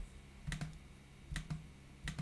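Computer keyboard being typed on: about five separate keystrokes, some in quick pairs.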